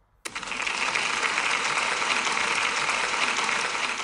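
Applause, many hands clapping densely and evenly, cutting in suddenly just after a request for a round of applause and holding steady at full strength.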